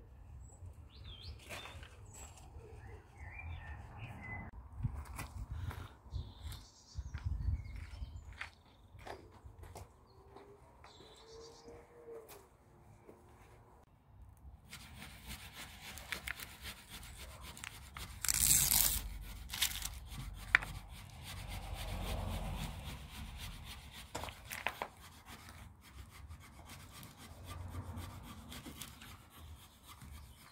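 Birds chirping faintly over low thumps, then a hand squeegee rubbed and scraped in repeated strokes over application tape, pressing a vinyl stripe decal onto a van's painted side panel.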